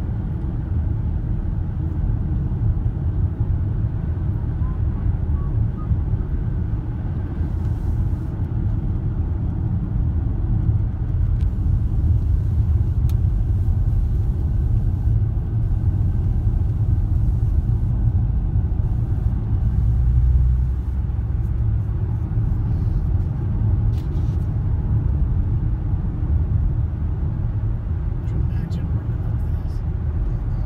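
Steady low rumble of road and engine noise inside a car's cabin while driving on a paved road, swelling briefly about two-thirds of the way through.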